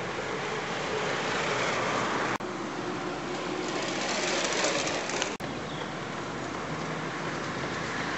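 Steady rushing outdoor background noise, broken twice by abrupt momentary dropouts where the footage is cut.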